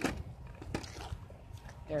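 A few faint knocks and clicks of a skateboard being handled and lifted off a concrete sidewalk, over a low rumble of handling noise; a voice starts right at the end.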